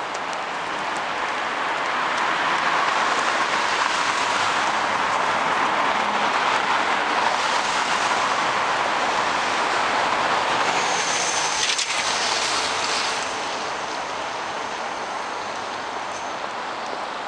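Road traffic on a busy city street: a steady rush of tyres and engines that swells for about ten seconds as vehicles pass, then eases. A faint thin high whine joins near the end.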